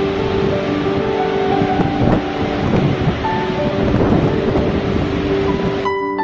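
Steady loud rush of falling water from a waterfall, with soft sustained music notes held underneath. Right at the end the water noise drops away and plucked harp-like notes begin.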